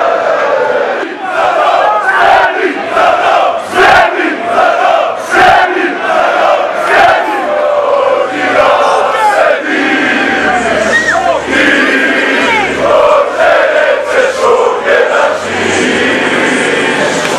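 Large crowd of football fans chanting and singing together in loud, repeated phrases, with shouts rising over the mass of voices. A couple of sharp cracks stand out about four and five and a half seconds in.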